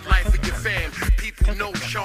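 Hip hop track: a rapper's voice over a beat, with a deep kick drum hitting several times and a low bass line.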